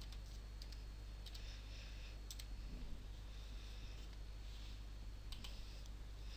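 Faint, sparse clicks of computer keys and a mouse as coordinates are entered, about half a dozen irregularly spaced, over a steady low hum.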